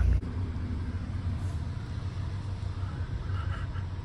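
Steady low rumble of a vehicle's engine and road noise heard from inside the passenger cabin, starting a moment in.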